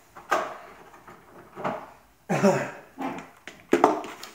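Handling noises as a plastic Bosch battery charger is fetched from below and put on a wooden worktop: a sharp knock just after the start, then a couple of quick clacks near the end as the charger is set down.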